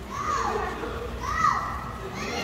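A child's voice making two high, drawn-out squeals, each rising and then falling in pitch, about a second apart.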